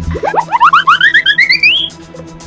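Cartoon sound effect: a quick run of short chirping notes that climbs steadily in pitch for about a second and a half, over children's background music.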